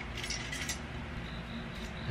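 Faint crinkling and light clicks of a plastic LED strip light and its reel being handled as the strip is unwound, mostly in the first second with another brief crackle near the end.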